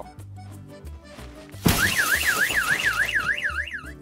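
Light background music, cut across about a second and a half in by a sudden loud noisy crash with a thump. A fast-warbling electronic siren follows, sweeping up and down about three to four times a second. Together they make a comic accident sound effect.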